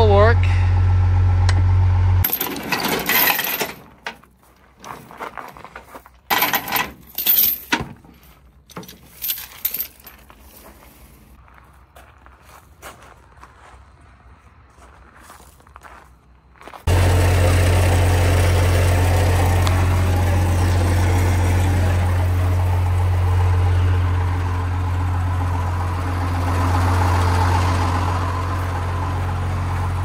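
A diesel tow truck, a 12-valve Cummins, idling with a steady low hum. It cuts off about two seconds in and comes back abruptly about 17 seconds in. In the quieter stretch between, chains, hooks and a shackle clink and clank as they are handled.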